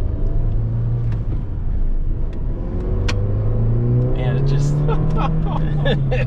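Turbocharged four-cylinder engine of a 2013 Mini Cooper S Coupe heard from inside the cabin, pulling in gear; its revs climb steadily from a couple of seconds in and fall back near the end.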